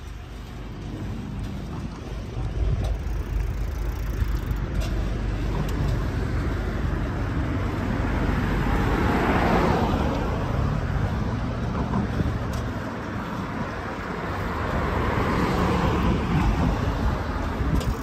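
Road and tyre noise of traffic on an expressway, swelling as a car passes close about halfway through and again near the end.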